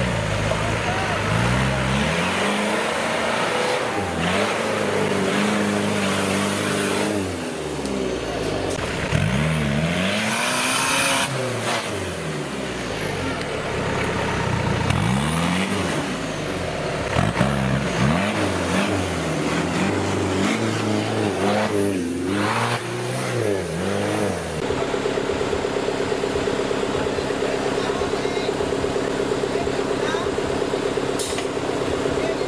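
Off-road competition 4x4's engine revved hard in repeated surges, the pitch climbing and falling again every couple of seconds as it fights through deep mud on its winch line. From about 24 seconds in, the sound settles into a steady, even drone with a fast regular pulse.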